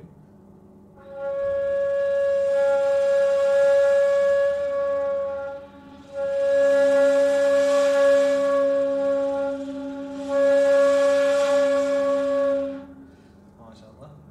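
Ney (Turkish end-blown reed flute) holding one long, breathy note, three breaths of about three to five seconds each, in a breath and volume-control exercise on the segâh note. From the second breath on, a second ney joins with a lower steady tone.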